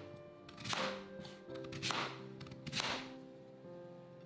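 Kitchen knife slicing through raw sweet potato and meeting the cutting board, three cuts a little over a second apart, over soft background music.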